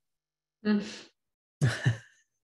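A man laughing briefly, heard through a video call: a short burst, then a quick two-beat chuckle near the end.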